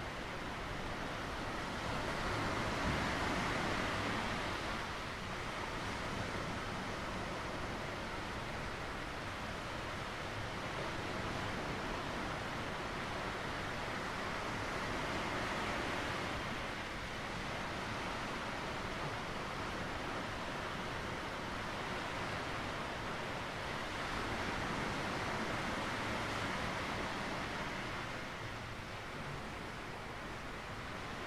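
Sea surf washing onto a rocky shore: a steady hiss that swells and eases slowly, three times over the stretch.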